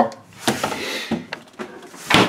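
Refrigerator door being swung shut: a knock about half a second in, a brief rustle, then a couple of light clicks.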